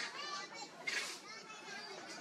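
Several high-pitched voices chattering and calling in the background, with the loudest call about a second in.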